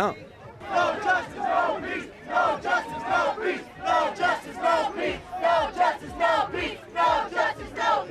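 A crowd of protesters chanting in unison, the same short phrase shouted over and over about every second and a half.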